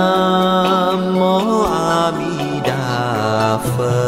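Buddhist devotional chant-song: a voice holding long chanted notes, sliding to a new pitch about one and a half seconds in and again near three seconds, over plucked-string accompaniment.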